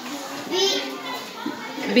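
A young girl's voice reading short English words aloud, one word about half a second in and another starting near the end, with other children's voices behind.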